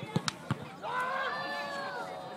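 A football kicked hard at goal in a penalty shot: three sharp thuds in quick succession within the first half second. About a second in, a long drawn-out shout follows.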